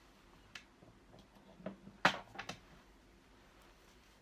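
A few light knocks and clicks from a small plastic travel iron and its cord being picked up and handled. The loudest knock comes about halfway through, followed by two quick smaller ones.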